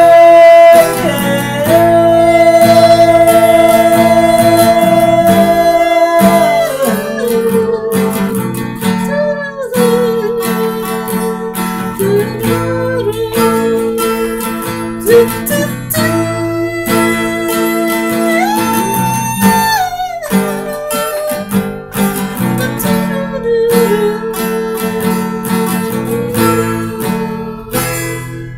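Strummed acoustic guitar with long, held wordless sung notes over it that slide from one pitch to the next.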